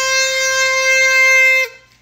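Party horn blown in one long, steady, buzzy note that cuts off abruptly after about a second and a half.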